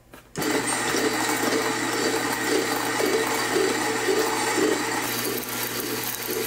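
Kafatek MC4 espresso grinder starting about a third of a second in and grinding coffee beans through its coarse pre-grinding conical burr and 71 mm conical burr set: a steady motor hum under a continuous grinding noise.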